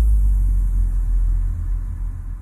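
Deep sub-bass drone left sounding after an electronic bass track's beat cuts off, slowly fading away.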